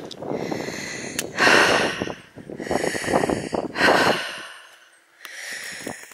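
A person breathing close to the microphone: a few long, breathy breaths in and out.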